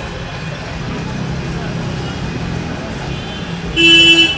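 Street traffic: a vehicle engine running with a steady low rumble, then a horn sounding briefly near the end.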